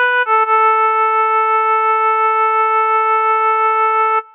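A sustained keyboard melody voice plays the last two notes of the tune: a short B, then a long held A with a slight regular waver, which stops abruptly at the end.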